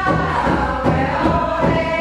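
A group of women singing a chant-like song together, holding long notes, over a steady low beat.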